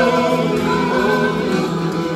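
Live worship singing: women's voices holding long notes together over the band's accompaniment.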